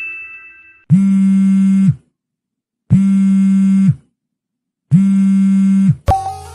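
A low electronic buzz sounds three times at a steady pitch, each buzz about a second long with a second's silence between, starting and stopping abruptly. A high ringing tone fades away during the first second.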